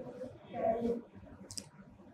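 A soft, faint murmur of a voice about half a second in, then a single short click about a second and a half in, in a quiet small room.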